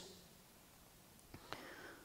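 Near silence during a pause in speech, with two faint clicks and a faint soft noise in the second half.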